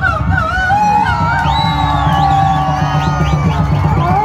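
Beduk drum ensemble playing rapid, dense drumming while a man sings a wavering melody through a microphone and PA, holding one long note in the middle.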